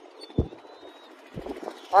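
A quiet outdoor pause with one brief low thump about half a second in, the kind made by a gust or a knock on the handheld phone's microphone, then a few fainter low knocks.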